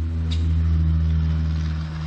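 Steady low machine hum, swelling slightly about halfway through and easing off near the end.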